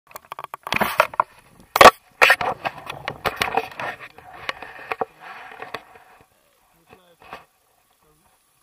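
Handling noise from an action camera on a selfie stick being set up against a paragliding harness: sharp knocks, the loudest about two seconds in, then rubbing and rustling that fades out by about six seconds.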